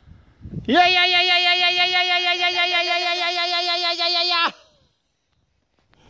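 A person's voice holding one long drawn-out high yell, 'Jeee', for about four seconds with a slight waver in pitch, cut off abruptly.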